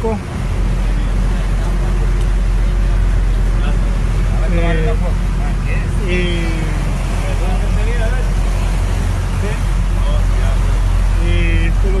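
Boat engine running with a steady low drone.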